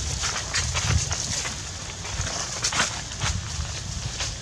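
Dry leaf litter rustling and crackling in short, irregular bursts over a low, steady rumble.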